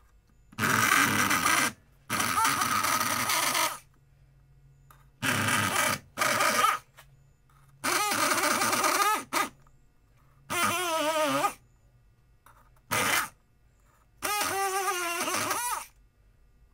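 Wendt electric lock pick gun buzzing in short bursts as its pick is driven into the pumpkin to carve it: about eight runs, each from a fraction of a second to about a second and a half, with brief pauses between. In a few of the longer runs the pitch wavers.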